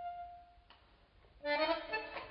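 A held, reedy note fades out, and after a short silence a tango orchestra starts up about one and a half seconds in with short, clipped notes.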